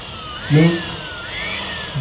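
An engine revved in repeated blips, its whine rising quickly and sinking back about once a second. A brief voice cuts in about half a second in.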